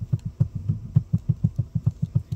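Handling noise on a small microphone held at the mouth: a rapid, even series of low thumps, about seven a second, from fingers working the mic.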